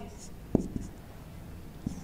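Marker pen writing on a whiteboard: faint scratches, with a sharp tap of the tip about half a second in.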